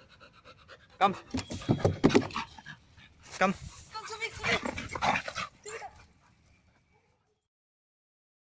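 Rottweiler panting, with the dog's movement around it; the sound fades out and cuts off about seven seconds in.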